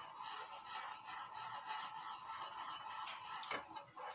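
A spoon stirring a simmering jelly mixture in an aluminium saucepan on a gas burner: faint light ticks of the spoon against the pan over a steady hiss, with one sharper click about three and a half seconds in.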